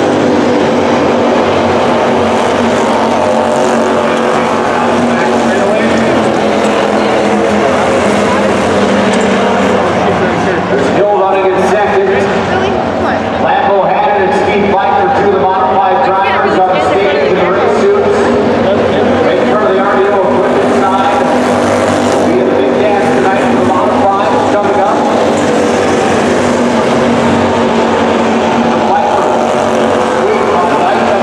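Several slingshot race cars running laps on a dirt track, their engines rising and falling in pitch as they go through the turns.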